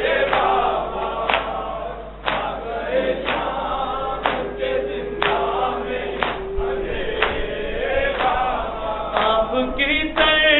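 Male voices chanting a noha in chorus, kept in time by matam chest-beating: a sharp hand slap about once a second.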